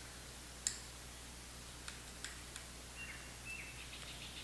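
Faint handling noise from a PCP air rifle being turned over in the hands: one sharp click about half a second in, then a few light clicks. Two short, faint high chirps follow near the end.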